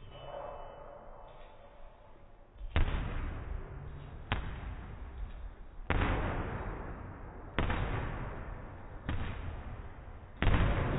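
Boxing gloves punching trainer's focus mitts: five sharp smacks about a second and a half apart, starting about three seconds in, each ringing on in a reverberant gym hall.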